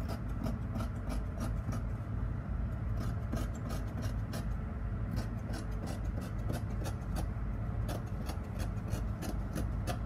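Scissors cutting through fabric along a curved sleeve line: a run of short, crisp snips, two or three a second, over a steady low hum.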